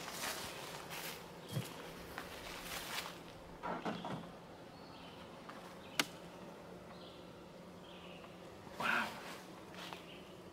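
Metal hive tool prying and scraping between the wooden boxes of a beehive as the upper box is lifted off, a few short scrapes and one sharp click about six seconds in. A faint steady hum of honeybees runs underneath.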